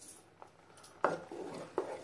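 Wooden spatula stirring a thick tomato-onion masala in a clay pot, with a few knocks of the spatula against the pot. The loudest knock comes about a second in.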